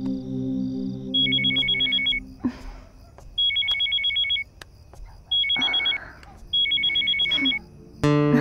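Mobile phone ringing: four rings, each a rapid electronic two-tone trill lasting about a second, with short gaps between them.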